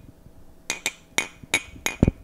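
Two ceramic coffee mugs clinked together right at a headset microphone, five light clinks in quick succession.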